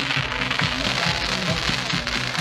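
Pyrotechnic spark fountains hissing and crackling steadily, with music playing over them.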